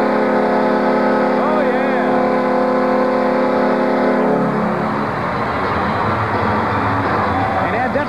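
Arena goal horn sounding one long, steady blast to mark a goal, stopping about four and a half seconds in, over crowd cheering that carries on after it.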